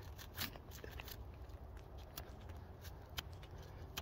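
Knife cutting into black willow bark and peeling a strip off the trunk: faint scattered crackles and small snaps.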